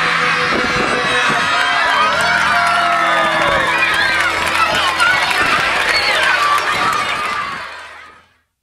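A crowd of children cheering and shouting over the held closing chord of a Christmas song, everything fading out near the end.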